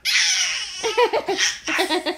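Baby laughing: a breathy burst, then a quick run of short, high-pitched laughs.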